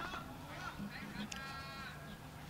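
Faint background noise with a short, high, honk-like call lasting about half a second, starting about a second and a half in.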